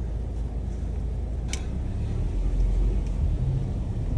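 Car engine idling, a steady low rumble heard from inside the cabin, with a single brief click about a second and a half in.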